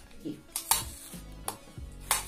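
A few sharp plastic clicks and crackles as the sealing film is pulled off a clear plastic jar of loose banana powder.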